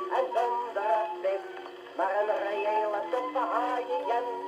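Portable wind-up gramophone playing a 78 rpm record of a sung song with accompaniment, heard through its acoustic soundbox with a thin tone and almost no bass.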